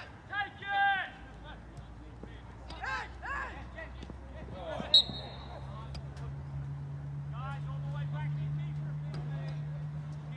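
Referee's whistle, one short blast about halfway through, stopping play for a player who has gone down. Before it come loud shouts from players on the pitch.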